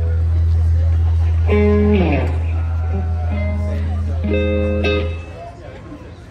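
Electric bass and electric guitar played loosely between songs. A long, loud, held low bass note stops about five seconds in, with a few guitar notes over it, one sliding down in pitch.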